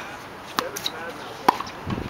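Tennis ball strikes on an outdoor hard court: a few sharp pops of racket on ball and ball on court, the loudest about a second and a half in.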